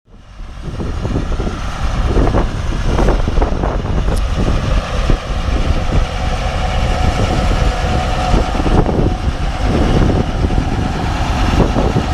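Small farm tractor's engine running as it tows a wagon along, with the wagon knocking and rattling over the lane. The sound fades in over the first second.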